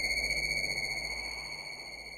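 Electronic music score: a single steady high-pitched tone, like a sonar ping, held over a low hiss and hum, slowly fading out.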